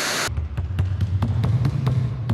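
A brief burst of TV-static hiss, then several basketballs dribbled rapidly on a hardwood court, bouncing in a fast, irregular patter over a low, steady drone.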